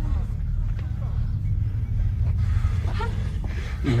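Steady low rumble, with a brief voice sound about three seconds in.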